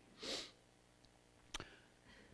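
A man's short breath drawn in close to a handheld microphone, followed about a second later by one brief faint click.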